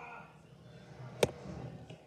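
A tiny toy water gun fired once: a single sharp click about a second in, against quiet room tone.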